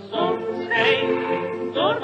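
Music from an old 1929 78 rpm record of a waltz medley: a singing voice with a wide vibrato over accompaniment, with a note sliding upward near the end. The sound is thin, with no treble, like an early shellac disc.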